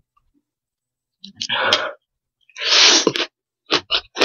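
Loud slurping of noodles: two long slurps, then two short ones near the end.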